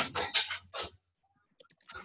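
Typing on a computer keyboard: a quick run of keystrokes in the first second, then a pause and a few faint clicks near the end.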